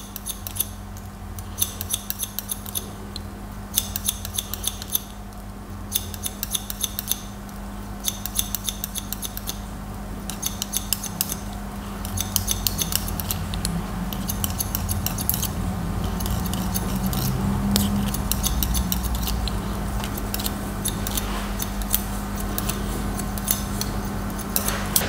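Barber's scissors snipping hair over a comb in quick runs, working scissor-over-comb to start a taper. Short bursts of rapid snips come every second or two over a steady low hum.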